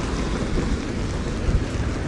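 Steady wind buffeting the microphone with a low rumble, mixed with the tyre noise of a recumbent trike rolling along a concrete sidewalk.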